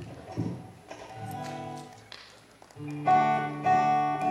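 Acoustic guitar played live: a few plucked notes ringing out, then louder strummed chords from about three seconds in.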